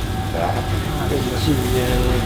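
Speech over a steady low machine hum in a commercial kitchen.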